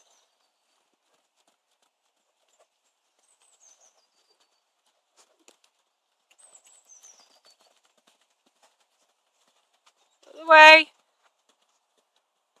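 Faint, scattered hoofbeats of a Welsh Section D mare trotting on an arena surface, with a few faint falling whistles. About ten and a half seconds in comes one loud, short call from a person's voice.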